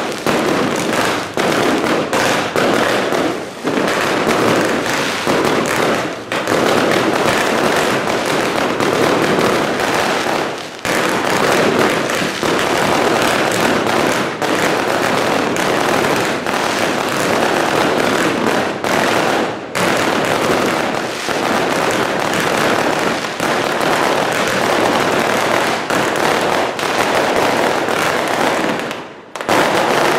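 A beehive rocket tower (Taiwanese fengpao) firing a dense, unbroken barrage of rockets and firecracker bangs: a continuous loud crackling rush of many overlapping reports, easing for an instant a few times and dropping out briefly near the end.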